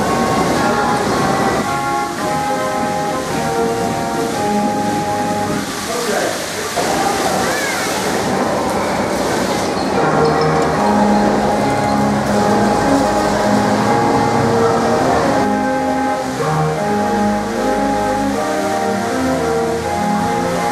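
Loud music with a melody and changing notes, over the steady rushing rumble of the Moonrockets fairground ride spinning.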